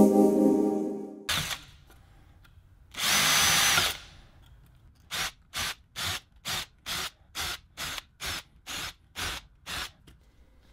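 Cordless drill with a drill-stop bit drilling holes through an aluminium angle backed by a wooden block. A long run winds down in the first second, a second run of about a second comes around three seconds in, then a string of about eleven short trigger blips follows at roughly two a second.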